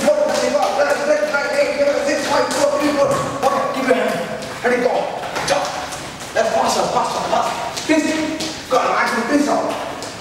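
Sneakers landing, stepping and shuffling on a wooden gym floor during kicking cardio moves, a scatter of light thuds under a man's raised voice.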